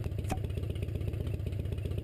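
Motorcycle engine idling with a steady, rapid, low rhythmic beat, and one short click about a third of a second in.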